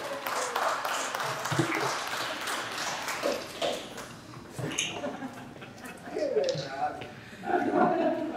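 People's voices, with scattered calls and talk and some clapping in the first couple of seconds, just after a live band stops playing.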